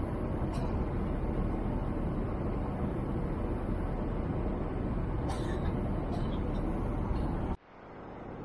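Steady cabin noise of a Boeing 787-8 Dreamliner in flight, with a few faint ticks over it. Near the end the noise cuts off abruptly and then fades back up.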